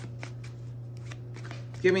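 Tarot deck shuffled by hand: a string of soft, irregular card clicks over a low steady hum.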